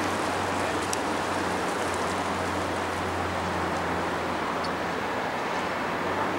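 Steady noise of distant city traffic, with a faint low hum running underneath.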